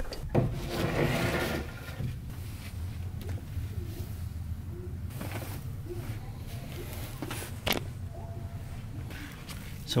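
Soft rustling and handling noise in the first second or two, then a low steady hum with a few light clicks and knocks.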